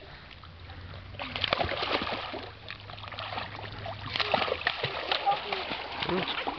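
Water splashing and sloshing in a small inflatable kiddie pool as toddlers move and slap about in it. The splashing is an irregular run of small splashes, picking up about a second in.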